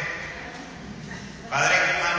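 A man preaching through a handheld microphone in a church. His voice trails off, there is a short lull, and about one and a half seconds in he starts again with a long, wavering drawn-out sound.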